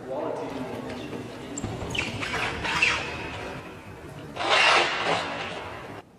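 Voices over background music, with two loud outbursts, one about two seconds in and another about four and a half seconds in. The sound drops off suddenly at the end.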